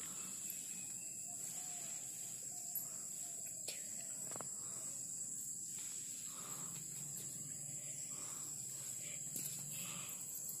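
Steady, high-pitched drone of an insect chorus, with a couple of faint clicks near the middle.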